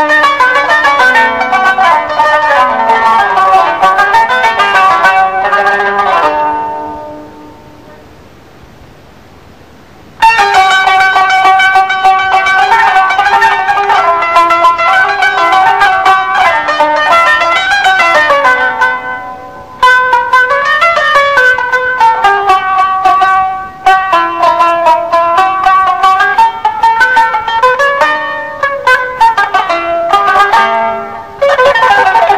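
A plucked string instrument playing an improvised taqsim in the Moroccan Andalusian tradition, a single melodic line of quickly picked notes. The playing fades out about six seconds in, and after a few quiet seconds starts again abruptly.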